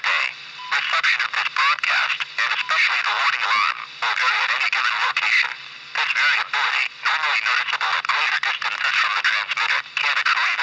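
An announcer's voice reading the NOAA Weather Radio weekly test message, heard through a portable weather radio's small speaker over a steady low hum.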